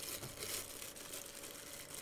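Faint crinkling and rustling of white paper wrapping as a camera kit lens is handled and set down on it: a scatter of light crackles.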